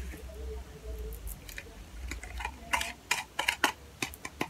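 A spoon clicking and tapping against a small container as the scrub mixture is scooped out, a quick run of light clicks starting about two and a half seconds in, over a low steady room rumble.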